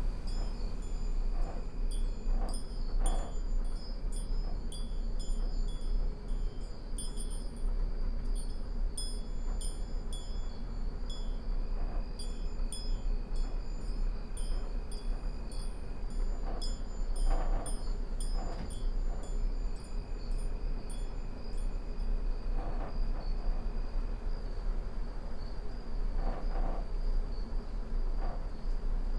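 Wind chime tinkling in scattered runs of light, high strikes, over a steady high trill of crickets and a low, steady rumble.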